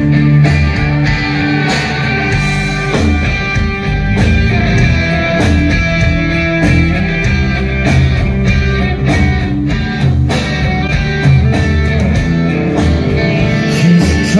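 Live rock band playing loudly through an instrumental passage without vocals: electric guitars and bass over a steady drum beat.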